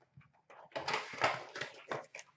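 Cardboard card box and its packaging being handled, with rustling and scraping that starts about half a second in and stops just before the end.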